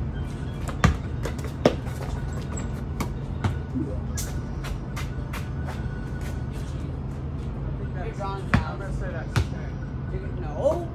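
A basketball bouncing on a paved driveway during one-on-one play: irregular sharp thuds, the loudest about a second in and near the end, over a steady low hum.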